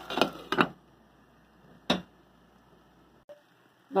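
A pot of rice cooking almost dry, with a faint sizzle and two quick knocks of a glass pot lid in the first second. Then near silence, broken by one sharp click about halfway through.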